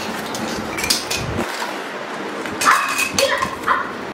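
Cardboard boxes rustling and knocking as they are packed into a fabric storage bin, with a dog giving a few short barks near the end.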